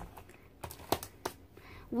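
A few light clicks and taps of plastic watercolour palette cases being handled and set down on a desk.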